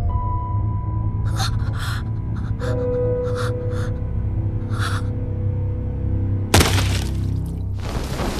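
Tense held-note background music with quick, sharp gasping breaths. About six and a half seconds in, a sudden loud crackling electric burst lasting about a second: a Dominator gun's paralyzer shot.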